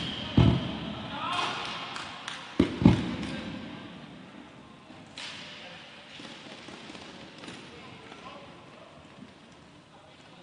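Three heavy thuds echoing in a large indoor rink: one about half a second in, then two close together about two and a half seconds in. Scattered voices from players and the crowd are mixed in.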